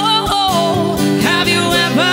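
Strummed acoustic guitar accompanying singing voices in a live acoustic performance of a rock song, played through a PA.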